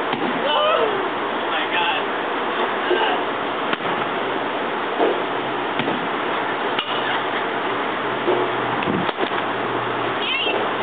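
Batting-cage ambience: a steady noisy background with scattered sharp knocks and clinks every second or two.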